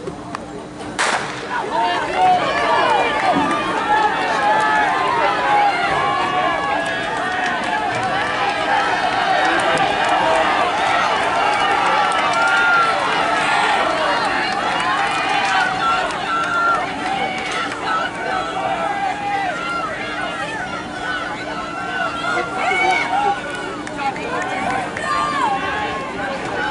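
A starting pistol fires once about a second in. Spectators then shout and cheer steadily, with many voices overlapping, noticeably louder after the shot.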